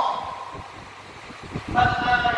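A man's voice intoning a sermon in long, held, chant-like phrases in a reverberant hall. The first phrase trails off and echoes away just after the start, and a new sustained phrase begins near the end.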